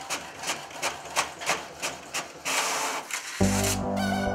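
HP Officejet inkjet printer printing a page, its mechanism clicking evenly about three times a second, followed by a louder rushing sound about two and a half seconds in. Synthesizer music with sustained chords comes in near the end.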